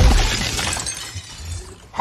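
Glass shattering with a sudden crash, the breaking glass hissing and fading out over about a second.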